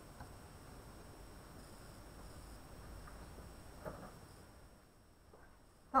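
Faint steady hiss of a lit Bunsen burner's yellow flame, with one light tap about four seconds in.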